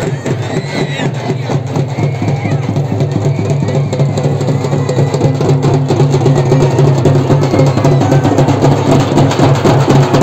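Large marching-band bass drums beaten in a fast, continuous rhythm, with a crowd's voices over them. The drumming grows louder over the first few seconds.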